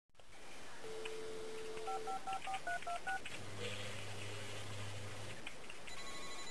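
Telephone dial tone, then seven quick touch-tone key beeps as a number is dialled, followed by a low buzzing tone for about two seconds.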